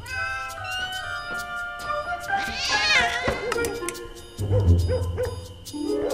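Soundtrack music of held tones, with a cat meow about two and a half seconds in that wavers in pitch for about a second. A low bass swell comes in near the end.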